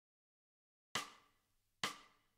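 Two short, sharp percussive clicks of a playback count-in, evenly spaced, the first about a second in and the second near the end, out of dead silence.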